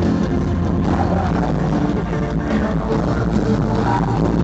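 Heavy metal band playing live at full volume over a concert PA, recorded from far back in the audience.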